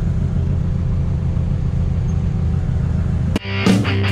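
Supercharged Chevette engine with an AMR500 blower, heard from inside the cabin, running at a steady low drone while cruising. About three and a half seconds in it cuts off suddenly and loud rock music with electric guitar starts.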